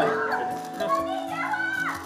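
Background music with held notes under high-pitched audience screaming and a man's voice.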